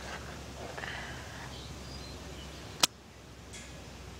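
A single sharp click as a homemade chopstick-and-rubber-band mini crossbow fires, near the end, over faint outdoor background noise.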